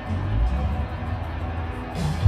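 Live band playing loud amplified rock music with electric guitar, heavy in the low bass, which swells up right at the start.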